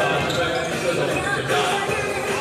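A basketball bouncing on an indoor court floor, with people's voices around it.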